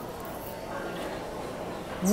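Steady background noise of a large, busy indoor public space, with faint distant voices.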